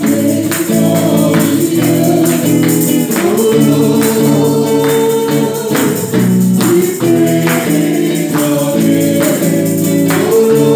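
Gospel worship song: a woman singing lead over electric guitar, with a steady percussion beat.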